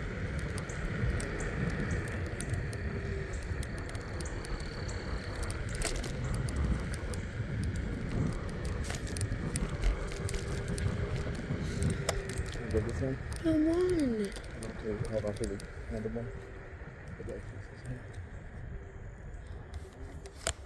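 Wind on the microphone and the tyre rumble of a Hiboy electric scooter riding on an asphalt street, with scattered clicks and rattles. A voice calls out briefly about two-thirds of the way through.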